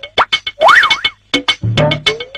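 Comic background music built from cartoon-style sound effects: quick clicks and boing-like pitch glides that zigzag up and down or sweep upward. The phrase repeats about every two and a half seconds.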